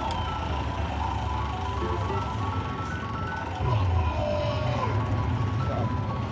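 Aristocrat slot machine playing its electronic music and run of short repeating notes while its bonus wheel spins, over a steady low casino hum that gets louder about three and a half seconds in.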